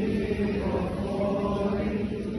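Greek Orthodox Byzantine chant sung by the church's chanters, a continuous vocal line with long held notes.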